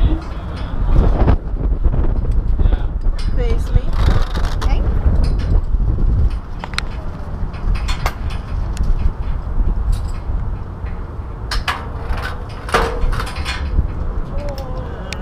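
Wind buffeting the worn camera's microphone, a steady low rumble that is heaviest in the first half, with scattered sharp clicks and knocks, several close together in the last few seconds, and faint voices.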